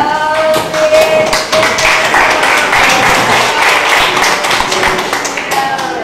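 A dense, irregular run of sharp taps lasting about four seconds. It starts just after a voice holds one steady note for about two seconds at the beginning.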